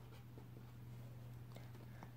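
Faint scratching of a pen writing on paper, a few short strokes, over a steady low hum.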